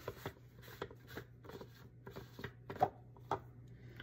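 Irregular clicks and scrapes of a utensil working through thick, freshly blended sesame paste (tahini) in its container, about ten in all, over a steady low hum.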